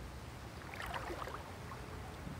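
Faint, steady flow of a shallow river over gravel, with a few faint light ticks around the middle.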